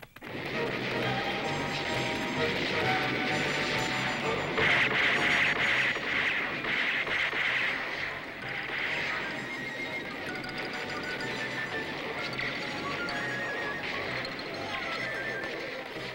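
Busy, loud soundtrack music for an animated action scene, at its loudest in the middle and somewhat softer from about halfway on.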